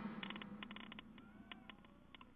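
Almost quiet: the last tail of an electronic background music track dies away at the start, leaving faint scattered ticks and a few faint short chirps.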